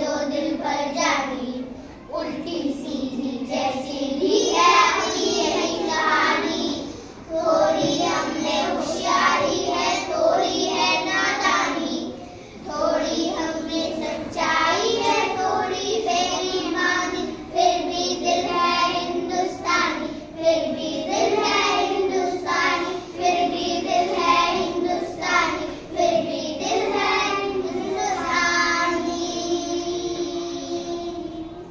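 A group of young children singing a song together in unison, in phrases with brief breaks between them.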